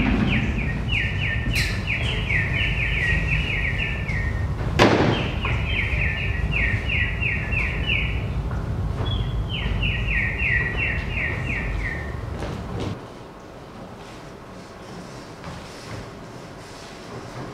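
Three runs of rapid, falling bird-like chirps, each lasting two to three seconds, over a low rumble that drops away about thirteen seconds in. A single sharp crack sounds about five seconds in.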